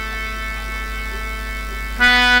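A musical instrument in the stage band holds one steady note without a break, over a low electrical hum from the sound system.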